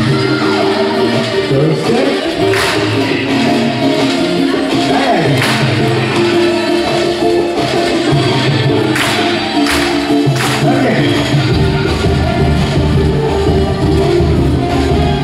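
Dance music with singing played over a loudspeaker, with a stronger bass line coming in near the end.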